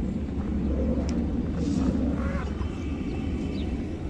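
Steady low rumble of outdoor background noise, with faint voices around the middle.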